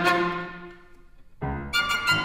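Violin and piano playing a classical piece. A loud chord dies away over the first second, there is a short lull, and then the duo comes back in with quick short notes.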